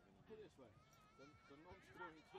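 Faint, distant voices shouting across an open field, with one drawn-out call held for about a second.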